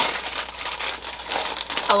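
A large sheet of packing paper rustling and crinkling as it is folded and wrapped around a garment. A woman's voice starts speaking right at the end.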